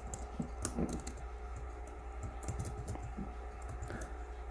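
Typing on the Book 8088 v2 laptop's built-in keyboard: faint, irregular key clicks as a short line of code is keyed in, including fixing a typo.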